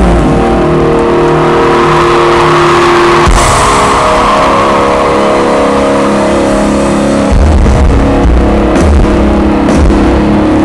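Live rock band music played very loud through a festival stage PA, heard from within the crowd. Held chords change about every three to four seconds over heavy bass.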